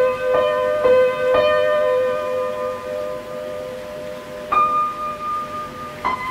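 Instrumental music from an indie rock demo recording: a few quick plucked notes about every half second, then long notes left to ring out bell-like, with a new higher note about four and a half seconds in.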